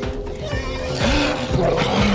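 Film sound of fleeing Gallimimus dinosaurs shrieking and squealing, horse-like, as a Tyrannosaurus seizes one of them, over music with held tones. The squeals are brightest about a second in.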